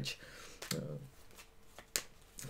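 Tarot cards on a cloth being handled: a few soft taps and slides of the cards, with a sharper click near the end.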